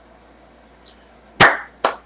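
A man's hands clapping twice, slow and sharp, about half a second apart, starting about a second and a half in.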